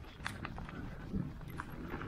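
A bicycle rattling over rough grassy ground: irregular clicks and knocks from the bike, over a low wind rumble on the microphone.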